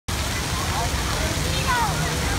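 Steady rush of water splashing and running at a water-park play structure, with faint distant voices calling over it.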